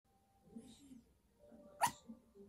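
Yorkshire terrier giving one short, sharp yip near the end, after a second of fainter, softer sounds: a demand for its owner to come to bed.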